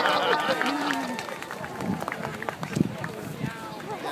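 Voices of an outdoor crowd, people shouting and calling out with drawn-out cries, fading in the second half into a scatter of short sharp noises.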